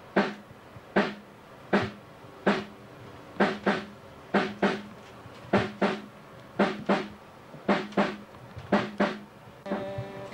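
A drum struck over and over with no other instruments: single hits a little under a second apart, then pairs of quick hits about a second apart, each ringing briefly with a low tone.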